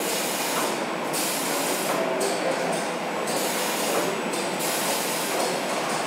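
Robotic paint sprayer coating a car body in a spray booth: a steady rushing hiss of atomized paint and booth air, its high hiss dropping out briefly several times as the spray pauses.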